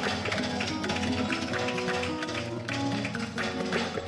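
Gospel band music: held keyboard chords over a steady tapping beat.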